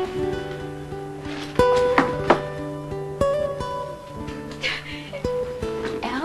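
Background music of plucked acoustic guitar, notes struck and left ringing over a steady low tone.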